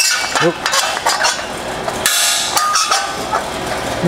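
Strong magnets clacking onto thin steel sheet on a steel workbench, with the sheet metal knocking and scraping against the bench as it is positioned: a run of short sharp clacks and a couple of brief scrapes.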